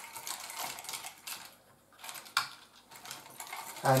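Light clicking and rattling of wires and small metal crimp connectors being handled on a circuit board of stop switches while a ribbon-cable connector socket is fitted into place. A quick run of clicks, a short pause, then a few more clicks.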